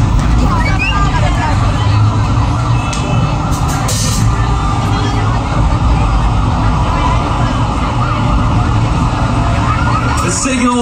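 Live hard rock band playing loud: distorted electric guitars and bass in a continuous wall of sound with drums underneath.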